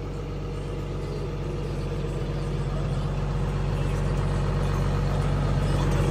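Farm tractor engine running steadily, heard from inside the cab while pulling an anhydrous ammonia applicator, growing gradually louder.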